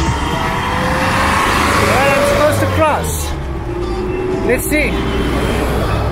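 City road traffic: car and truck engines running in a slow jam, giving a steady low rumble. Brief snatches of voices come around two and three seconds in and again near five seconds.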